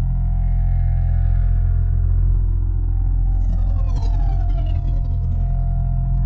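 Intro sound effect for an animated logo: a deep, steady rumbling drone with held tones above it, and a whine that falls in pitch from about three and a half seconds in.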